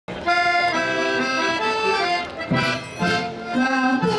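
Accordions playing a lively Portuguese folk dance tune, starting abruptly at the very beginning. Two percussive hits come about midway.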